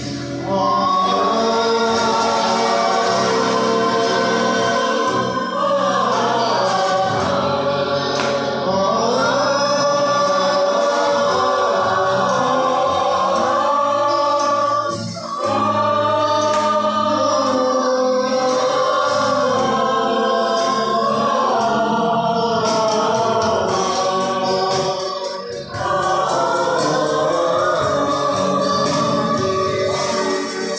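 A mixed group of amateur voices singing a song together into microphones, in long held phrases that pause briefly about every ten seconds. A light tapping percussion runs under the singing.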